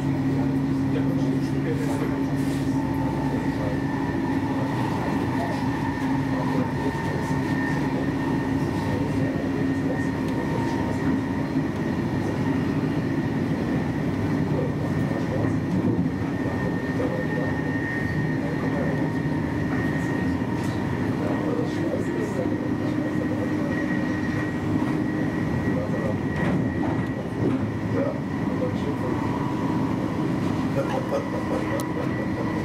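Intercity train running along the line, heard from inside the driving cab: a continuous rumble of wheels on rail with a steady hum of several tones over it and scattered brief clicks.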